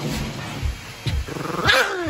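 Schipperke growling in low, rumbling pulses, then breaking into a louder snarl near the end: protective growling over a stuffed raccoon toy it is guarding.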